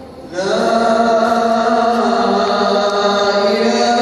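A man's voice chanting over a mosque's loudspeakers, holding long, drawn-out notes that slide between pitches. A new phrase begins about a third of a second in, after the previous one fades away in the hall's echo.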